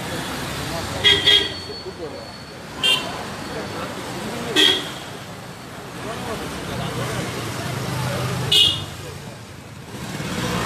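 Crowd of street demonstrators: a steady hubbub of many voices, broken by four short, loud, shrill sounds, the first about a second in, then near three, four and a half and eight and a half seconds.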